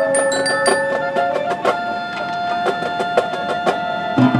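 Marching band music in a softer passage: several held tones sound together, with a few short, high bell-like mallet-percussion notes struck in the first second and scattered light taps.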